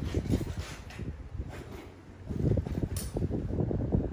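Wind buffeting a phone microphone: a low, uneven rumble that eases off for a moment midway, with one sharp click about three seconds in.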